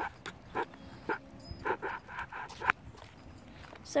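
A dog panting in short, irregular huffs, with a faint whimper through the middle.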